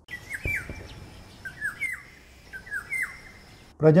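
Indian golden oriole singing: three fluty whistled phrases, each a short note followed by a downward slide, about a second and a quarter apart. A brief low knock comes about half a second in.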